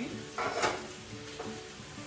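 Halved cherry tomatoes tipped into a pan of hot olive oil and garlic. There is a sudden burst of sizzling and pan clatter about half a second in, then a quieter steady sizzle.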